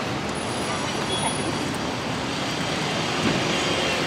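Steady city street noise: road traffic running continuously with a faint background of voices.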